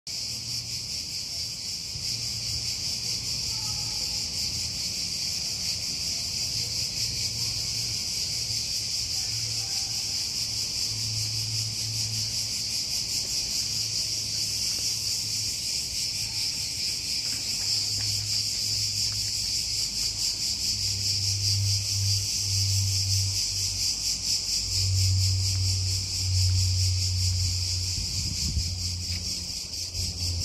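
A steady, high-pitched insect chorus running without a break. A low rumble comes and goes underneath, louder in the last ten seconds.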